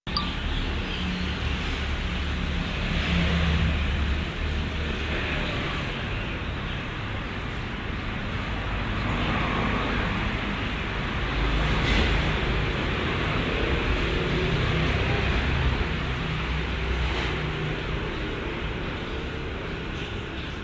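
Steady outdoor noise, a low rumble with a hiss above it, like distant city road traffic. It starts abruptly and swells and eases slowly, with no distinct events.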